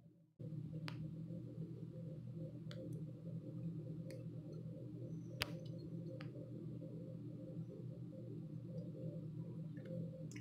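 Steady low hum of room or appliance noise, with a few faint, sharp clicks scattered through it.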